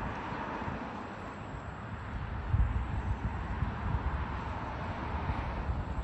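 Wind buffeting the microphone in uneven gusts, the strongest about two and a half seconds in, over a steady outdoor background hiss.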